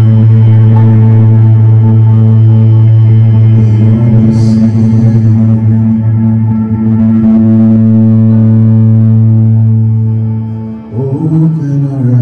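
Electric bass played through an ambient effects pedal board, heard close to its bass cab: one long, steady low note held for about ten seconds. About eleven seconds in it fades, and a new swelled note comes in.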